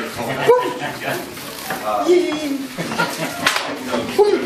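Indistinct voices talking in a room, with one sharp slap about three and a half seconds in.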